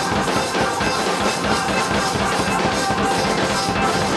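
Live band playing a gospel jam: a drum kit keeps a busy, steady beat over organ, guitars and bass.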